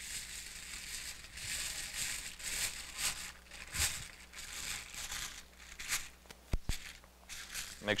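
A sheet of red heat transfer foil crinkling and rustling as it is crumpled by hand and then pulled open, in uneven spurts. Two sharp knocks come a little past six seconds in.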